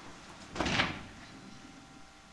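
A single short scraping thump about half a second in, as pallbearers set a wooden coffin down.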